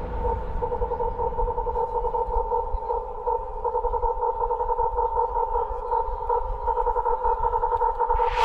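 Breakdown in a hard techno DJ set: a held synthesizer note with no kick drum, wavering rapidly in loudness over a low rumble.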